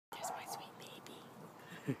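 Soft, breathy whispering, loudest in the first half second, then a person's laugh starting right at the end.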